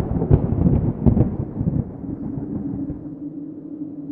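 An added cinematic sound effect: a deep rumbling boom, like thunder, with a few sharp cracks in it. Over about two seconds it dies away into a low, steady drone tone.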